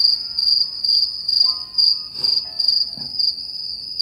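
Cricket chirping sound effect, a steady high trill pulsing about two to three times a second, used as the comic 'awkward silence' gag while waiting.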